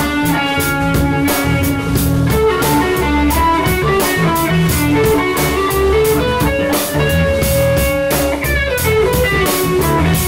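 Live rock trio of electric guitar, electric bass and drum kit playing an instrumental passage with a steady cymbal beat. Long held notes, likely from the lead guitar, ride over the bass and drums, with a note bending down about eight and a half seconds in.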